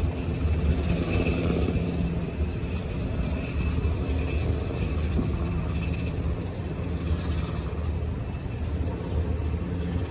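Steady low rumble with a faint thin whine above it.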